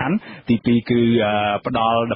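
Only speech: a man talking in Khmer, with a couple of drawn-out syllables in the second half.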